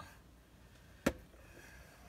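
A single sharp clink a little past halfway, a metal spoon striking the glass mixing bowl as stirring begins, against quiet kitchen room tone.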